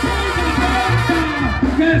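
Loud music with a steady bass line and melody lines over it.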